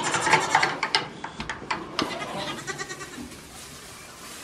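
Goat kids bleating, with a run of sharp clicks and knocks in the first two seconds that grows quieter after that.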